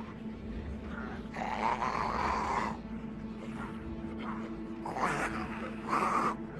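Rasping snarls of a film zombie: a long one about a second and a half in, then shorter ones near the end. A steady low hum runs underneath.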